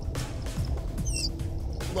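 Background music, with one short high-pitched, wavering squeak a little after a second in: a manatee's chirping call heard underwater.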